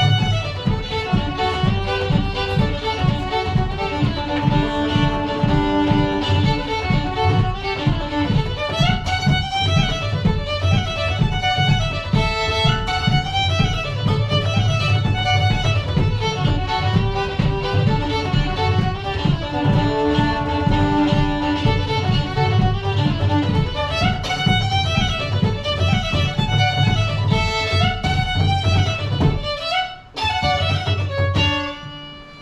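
Irish fiddle and bodhrán playing a lively traditional dance tune together. The fiddle carries the melody over the steady beat of the frame drum, which is struck with a small stick. The music dips briefly right at the end.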